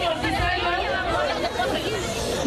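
Speech only: a woman talking into a handheld microphone, with crowd chatter.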